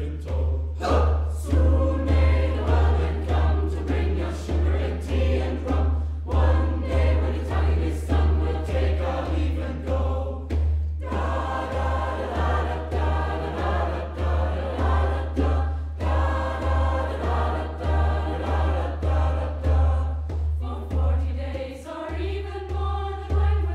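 Mixed youth choir singing in parts, with a regular low beat pulsing underneath the voices. The singing thins briefly about ten seconds in.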